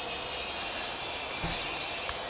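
Steady outdoor background rumble, like distant traffic, with a soft low thump about one and a half seconds in.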